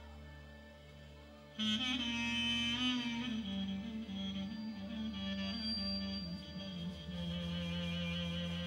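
Live band music led by a clarinet: a quiet sustained backing chord for the first second and a half, then the clarinet comes in loudly with a bending, heavily ornamented melody in Bulgarian wedding-music style over the held backing.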